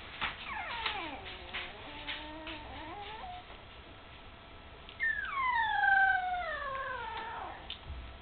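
A nearly three-week-old puppy whining: two long cries that slide down in pitch. The first is softer; a louder one starts about five seconds in.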